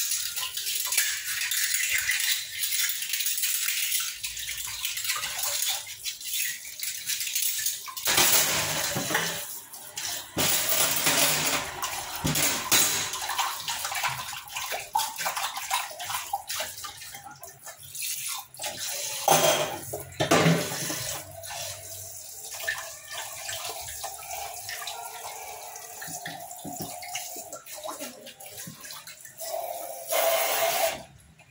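Kitchen tap running onto hands and utensils in a stainless steel sink: steady splashing water with frequent clinks and knocks of steel vessels and glass tumblers being handled and rinsed.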